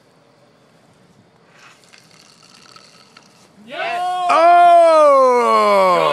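A few quiet seconds, then about two-thirds of the way in a man lets out one long, loud yell that slides down in pitch.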